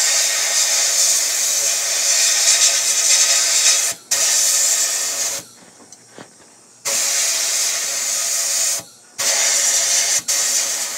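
Abrasive blasting in a sandblast cabinet: the blast gun's loud hiss of air and grit playing over a pressed-steel toy truck part. The hiss cuts off whenever the trigger is let go, briefly about four seconds in, for over a second at about five and a half seconds, and briefly again near nine seconds.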